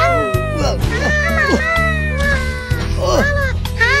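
Background music with steady low sustained notes, under a string of high, wailing cries that bend up and down in pitch several times a second.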